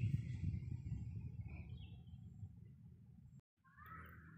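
A low rumble that fades away over the first three seconds, cut by a brief dropout, then a few short bird chirps near the end.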